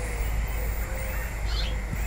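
Outdoor background with a steady low rumble and a bird calling faintly, a few soft cooing notes.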